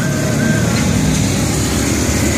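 A motor vehicle's engine rumbling steadily and loudly as it passes close by.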